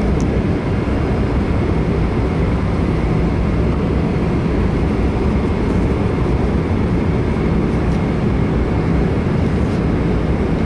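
Steady low roar of an airliner cabin in flight, the engine and airflow noise of cruise.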